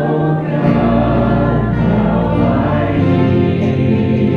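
A live worship band playing a Christian worship song, with several voices singing together over acoustic guitar and band accompaniment. Deep low notes come in under a second in.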